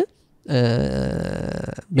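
A man's low, gravelly, drawn-out throat sound at a close microphone, about a second and a half long after a brief silence.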